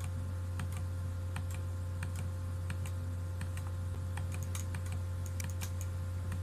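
Irregular sharp clicks, a few a second and coming thicker toward the end, as solenoid-valve channels on a relay-driven control panel are switched off one after another. Under them runs a steady low hum.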